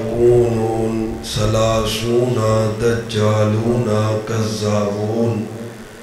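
A man's voice reciting Arabic in a slow, melodic chant through a microphone, holding long notes that rise and fall in pitch. It trails off near the end.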